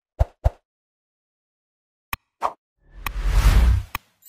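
Sound effects of an animated subscribe-button overlay: two short pops, then a click and another pop, then a whoosh lasting about a second that ends in a click.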